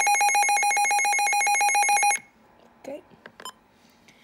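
Midland WR400 weather alert radio sounding its alert siren during an alert test: a loud, high electronic tone beeping about ten times a second, which cuts off suddenly about two seconds in.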